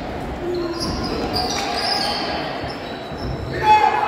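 Basketball game noise in a large echoing gym: sneakers squeaking on the hardwood floor and a ball bouncing, with players' voices, and a loud shout near the end.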